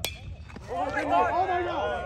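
A metal baseball bat hits the ball with a sharp ping right at the start. About half a second later several voices shout and cheer over one another.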